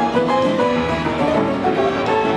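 Antique coin-operated player piano playing a ragtime tune from its paper music roll, a busy stream of quick piano notes.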